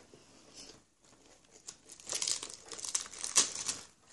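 Crisp iceberg lettuce leaves being handled and pulled apart: quiet at first, then a dense run of crinkling and tearing from about halfway in, loudest near the end.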